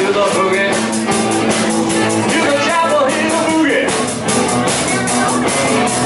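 A live rock band playing: electric guitars over a steady drum-kit beat, with bending guitar lines on top.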